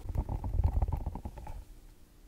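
Squishy toy squeezed close to the microphone, its gel tongue pushed out through its mouth with a squelch made of a rapid run of small crackles that dies away about a second and a half in.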